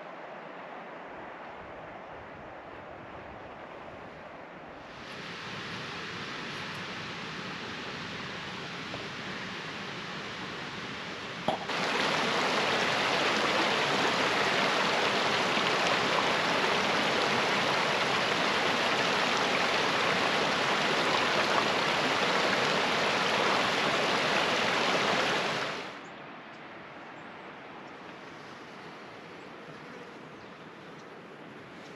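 Small mountain creek rushing over rocks: a steady water rush that gets louder in two sudden steps, about five and twelve seconds in, the second with a click, then cuts off abruptly about four seconds before the end, leaving a faint hiss.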